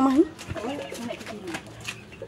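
A dove cooing faintly after a spoken word.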